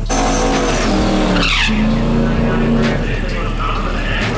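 A drag car's engine revving hard with its tyres spinning in a burnout, the note falling away about a second and a half in and then holding steady at a lower pitch.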